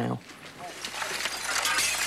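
Broken glass clinking and crunching as shattered window frames and debris are pulled from a damaged building, a dense clatter that grows louder through the second half.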